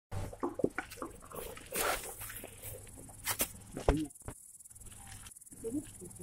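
A domestic cat giving several short meows, among scuffing and rustling noises.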